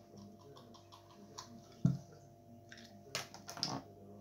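Scattered light clicks and taps, with one sharper thump a little before halfway and a few short rustling bursts near the end, over a faint steady hum.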